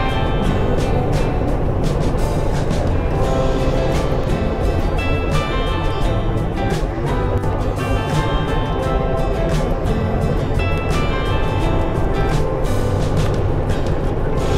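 Background music with a steady beat, over the road noise of a pickup truck cruising at highway speed.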